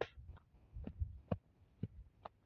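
Footsteps of someone walking on a grassy hillside while carrying a handheld camera: faint, irregular soft thuds and clicks, about six in two seconds.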